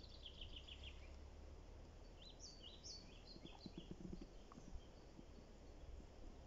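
Quiet woodland ambience with faint songbird calls: a quick run of short high notes at the start, then a series of short rising chirps about two to three and a half seconds in. A few faint soft knocks follow in the middle.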